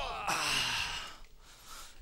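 A man sighs: a short voiced sound falling in pitch, then a breathy exhale lasting about a second.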